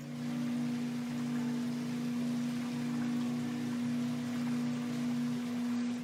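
Electric pottery wheel spinning with wet clay on it: a steady motor hum under an even, wet hiss that starts suddenly and fades out at the end.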